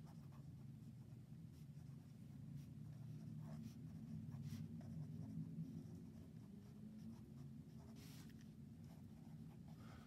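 Faint scratching of a pen writing on lined notebook paper, stroke by stroke, over a low steady hum.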